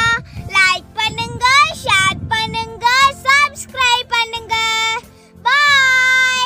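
A young girl singing a short, lively phrase, with longer held notes toward the end.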